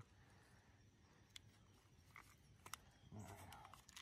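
Near silence, with a few faint, sharp clicks scattered through it and a brief faint murmur of a voice about three seconds in.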